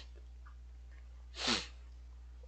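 A man's single short, breathy sniff-like burst about one and a half seconds in, over a faint steady low hum.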